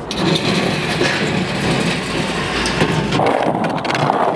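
Skateboard wheels rolling over tiled stone pavement, a steady rumble. A run of sharp clicks comes near the end.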